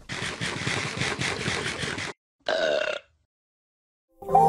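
A cartoon character's raspy, rattling growl for about two seconds, followed by a short voiced squawk and then silence.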